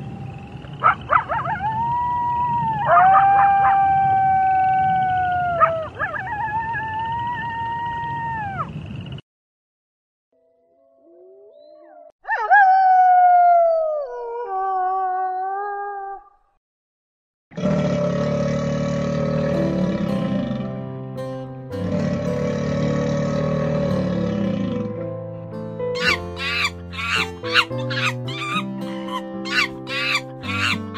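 Several wolves howling together in long, overlapping, gliding howls for about nine seconds. After a brief pause comes one more howl that falls in pitch. From about halfway on, music takes over, with a steady beat near the end.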